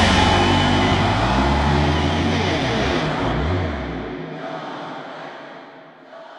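A hard-rock song ends on a final chord that rings out, with low notes that bend in pitch, and the sound fades away over the last couple of seconds.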